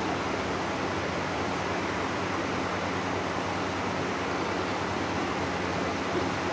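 Steady, even room noise of a large hall, a constant hiss with a faint low hum underneath and no distinct events.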